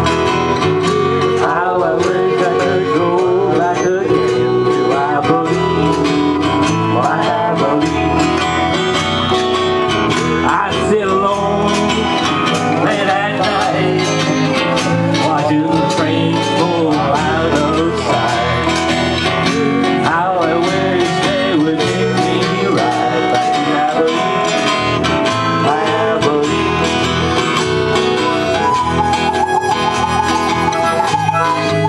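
Live country-folk band playing an instrumental passage: an acoustic guitar with a full band behind it, and a lead melody that bends in pitch.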